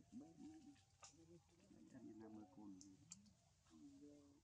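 Faint, distant voice-like sounds in short phrases over near-silent background, with a few soft clicks.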